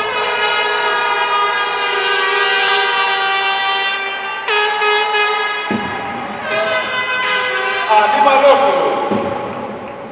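Loud, long, horn-like held tones. One lasts about four seconds, a shorter one follows about half a second later, and more broken tones with a wavering, voice-like line come near the end.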